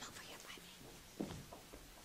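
Faint low voices murmuring and whispering, with one short, louder voice sound just after a second in.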